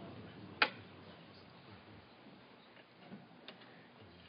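Quiet room tone broken by one sharp click about half a second in, then a fainter click or two near the end.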